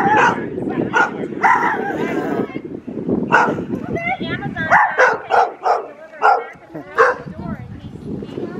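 Dog barking and yipping in a run of short, sharp barks, coming closer together in the second half.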